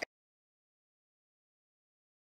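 Complete silence: the sound track drops out entirely, with no room tone or background noise.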